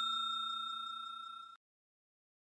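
The fading ring of a bell-chime sound effect for a subscribe and notification-bell animation: one steady bell tone dying away, cutting off suddenly about one and a half seconds in.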